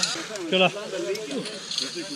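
Men's voices: a short "ja" about half a second in, then quieter talk from several people over a faint hiss.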